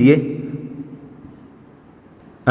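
Marker pen writing on a whiteboard: faint, scattered scratching strokes after a man's voice trails off at the start.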